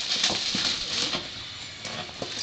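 Shiny foil gift wrap crinkling and rustling as a present is handled and unwrapped, loudest in the first second and then easing off.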